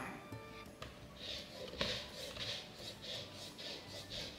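Soft background music over an orange being zested on a rasp grater, the rind scraping in short strokes about two or three times a second.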